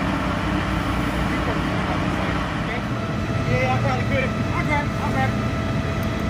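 Fire engines running steadily, a continuous low engine drone, with brief indistinct voices about halfway through.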